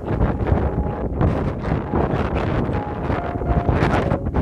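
Strong wind blowing hard across the microphone: a loud rush with a deep rumble that surges and drops in gusts.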